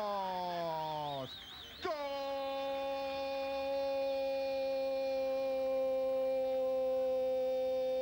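Football commentator's drawn-out goal cry, the long held "gooool" of Argentine TV commentary. A falling held note ends about a second in, then after a short breath one long call held at a steady pitch for about six seconds, lifting at the very end.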